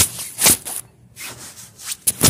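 Rubbing and scraping handling noise on a handheld phone's microphone as it swings while the holder walks: two loud strokes, at the start and about half a second in, then softer rustling.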